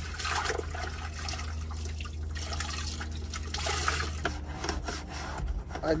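Cloth scrubbing and wiping on a car's interior plastic door trim, a busy, irregular rubbing texture over a steady low hum.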